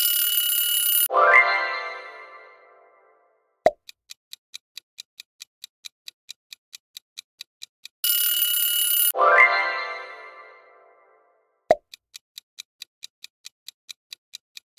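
Quiz-game timer sound effects: a clock ticking quickly, then an alarm-clock bell ringing for about a second as time runs out, followed by a short musical chime that fades over about two seconds and a single pop. The cycle runs twice, about eight seconds apart.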